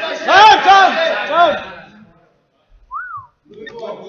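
Spectators whooping, several loud calls in quick succession that each rise and fall in pitch, then a brief lull and a single short whistle about three seconds in, as the round ends.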